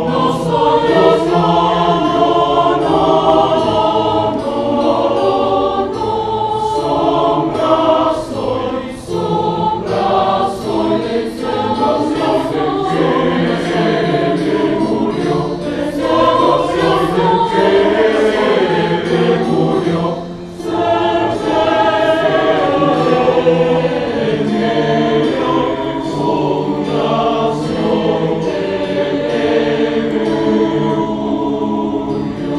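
A large choir singing in several voice parts, with held chords; the sound thins briefly about twenty seconds in.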